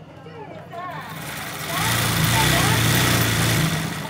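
Sewing machine running fast for about two seconds in the middle, stitching freehand embroidery through hooped fabric, then stopping just before the end.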